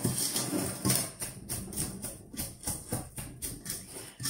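A pestle pounding and grinding chopped green onion with salt and dill in a stainless steel bowl, about four strokes a second, each a dull knock against the bowl's bottom.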